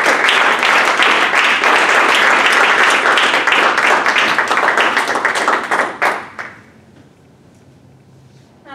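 Audience applauding, loud and steady, dying away about six seconds in.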